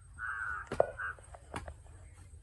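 Kudal (digging hoe) chopping into soil: two sharp strikes, the loudest about a second in. A crow caws twice just before and around the first strike.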